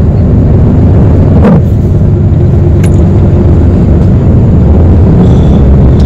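Steady low rumble of a moving vehicle's engine and road noise, heard from inside the vehicle as it drives.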